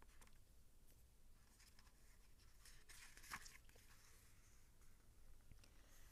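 Near silence: quiet room tone with a few faint, scattered clicks, the most noticeable about three seconds in.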